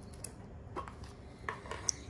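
A few light clinks and knocks of kitchenware as a metal bowl is handled and brought over to the baking sheet, four short taps spread out.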